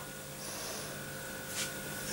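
Quiet room tone with a faint steady hum, and a soft brief sound near the end.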